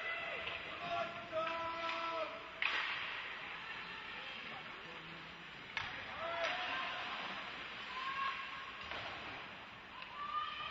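Live women's ice hockey play heard across a rink: high-pitched shouts and calls from the players over the hall's steady hum. Sharp cracks from the play stand out, the loudest about two and a half seconds in, and another around six seconds.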